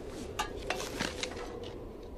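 Provisions being handled and unpacked: a few light, sharp clicks and clinks, spaced irregularly over a quiet background.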